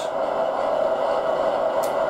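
Steady diesel engine hum from the onboard sound decoder and speaker of a Lenz O gauge DB V100 (BR 212) model locomotive.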